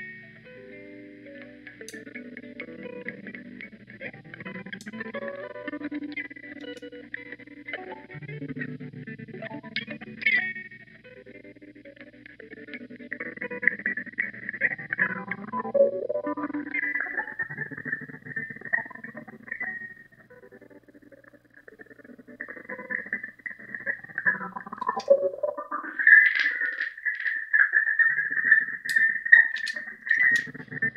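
Electric guitar loop playing back through a Chase Bliss Blooper looper pedal as more layers are overdubbed and modifiers warp it, leaving the main loop ruined. Pitch swoops come through around the middle, and a high sustained tone grows louder near the end.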